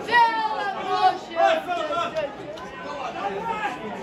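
Men's voices shouting and calling at a football match, several at once, with loud calls near the start and about a second and a half in, then quieter chatter.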